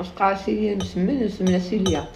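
A metal teaspoon clinking against a ceramic mug as it is stirred, several light clinks, over a woman's voice.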